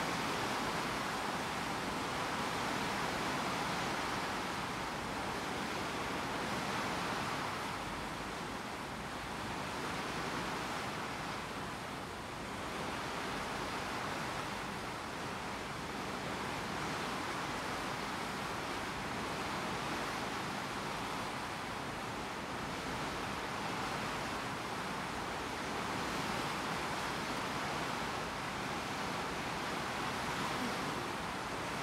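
Bow wave of a large ship's hull: a steady rush and splash of water, swelling and easing slowly.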